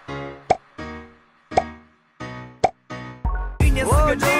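Playful background music: short pitched notes, each starting with a sharp pop sound effect, about one a second. Near the end a louder song with a singing voice comes in.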